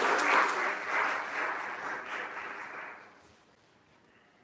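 Audience applauding. The clapping thins out and dies away about three seconds in.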